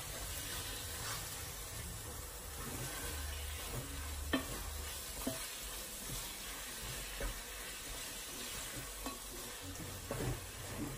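Wooden spoon stirring bulgur wheat in a pot on the stove over a steady sizzle, with a few knocks of the spoon against the pot, the sharpest about four seconds in.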